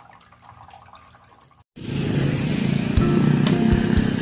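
Small tabletop fountain trickling faintly. About two seconds in the sound cuts out and loud background music with a steady beat begins.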